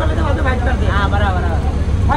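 Photographers' voices calling out, with a steady low rumble underneath.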